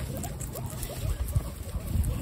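Guinea pigs chewing and biting into slices of fresh tomato, a run of quick, close-up munching clicks.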